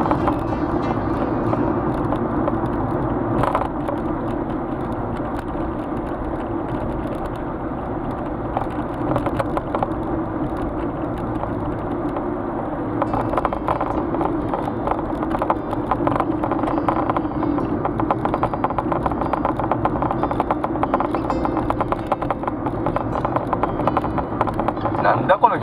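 Car cabin noise while driving: a steady engine and tyre drone that grows rougher about halfway through.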